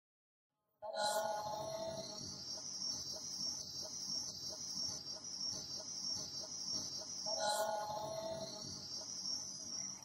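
End-credits soundtrack that starts abruptly about a second in: a steady high shrill chirring like a cricket chorus, with a mid-pitched chord sounding at its start and again about seven and a half seconds in.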